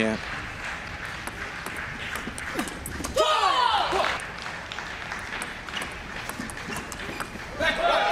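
Light clicks of a table tennis ball on bats and table, with one loud, high-pitched shout about three seconds in, typical of a player celebrating a point.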